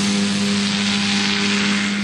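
Two-seat powered parachute's engine and propeller running steadily as the craft lifts off and climbs away, a constant drone that eases slightly near the end.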